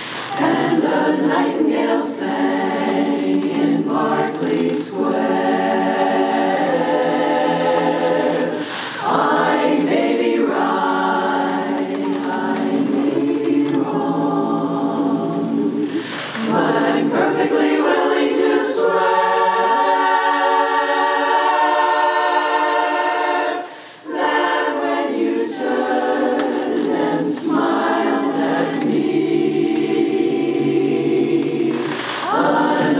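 Women's chorus singing a cappella in close harmony, holding full sustained chords. The sound breaks off briefly for a breath about three-quarters of the way through, then comes back in.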